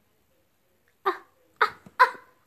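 Baby crocodile giving three short, sharp calls about half a second apart, heard through a tablet's speaker as the video plays.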